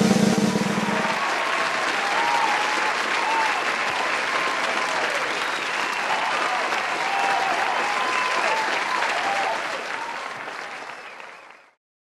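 A snare drum roll ends about a second in, and an audience applauds, with some cheering voices in the clapping; the applause fades out near the end.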